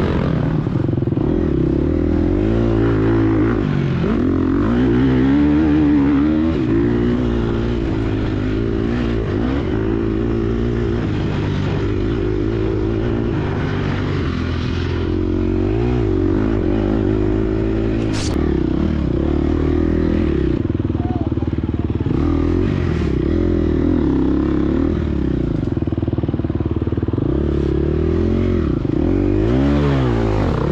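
Gas Gas EX250F four-stroke single-cylinder dirt bike engine, heard from on board, revving up and down over and over as the rider works the throttle and gears through the course.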